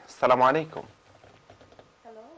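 A man says a short word, then faint, scattered light clicks follow, as of a laptop keyboard being tapped.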